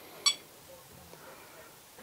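A single short electronic beep from the ToolkitRC M6 charger, about a quarter second in, as its button is pressed to confirm stopping the charge.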